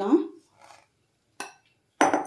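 Glass mixing bowl set down with one short, sharp clink, about one and a half seconds in.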